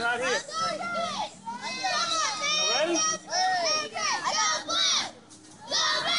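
Several children's high-pitched voices shouting and calling out over one another during play, with a short lull about five seconds in.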